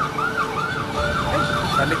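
Electronic vehicle siren in fast yelp mode: a rising-and-falling wail repeating about three to four times a second.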